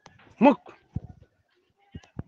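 Speech: a single short spoken syllable with a rising then falling pitch, followed by a few faint clicks.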